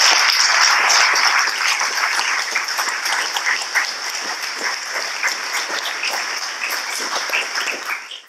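Audience applauding at the close of a lecture. The clapping is dense and full at first, then slowly thins out, with single claps more distinct near the end.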